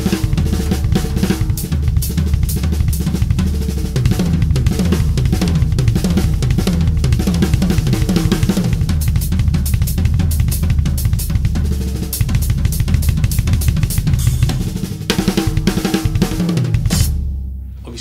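Drum kit played with sticks: rapid snare and tom fills over bass drum, with cymbal and hi-hat strokes. The playing stops about a second before the end.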